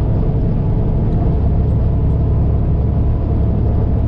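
Semi truck's diesel engine and tyres droning steadily inside the cab while cruising down the highway.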